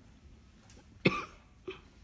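A person coughing once, sharply, about halfway through a quiet moment, followed by a fainter short cough or throat sound just after.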